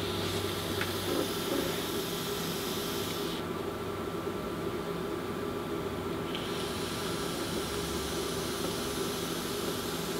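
Dual cotton micro coils firing in a Helios clone rebuildable dripping atomizer at about 0.25 ohm, giving a sizzling hiss of e-liquid vaporizing and air drawn through the deck. There are two draws: one at the start lasting about three seconds, and a second starting about six seconds in and running on. A steady low room hum sits underneath.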